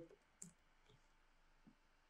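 Near silence with a few faint computer keyboard keystrokes; the sharpest click comes about half a second in.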